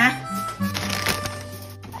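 Background music with steady held notes, and a brief rustle of packaging being handled, about half a second to a second and a half in.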